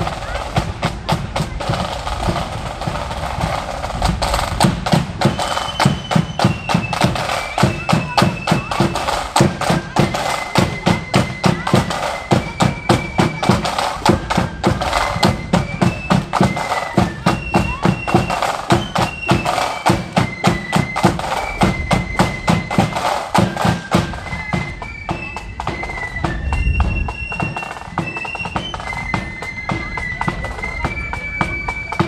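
Marching flute band playing: a high, shrill flute melody over steady snare and bass drum beats, the flutes becoming clear a few seconds in.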